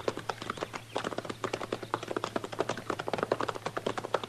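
Radio-drama sound effect of horses' hooves clopping on hard ground as riders move off, a quick, uneven run of clops over a steady low hum from the old transcription.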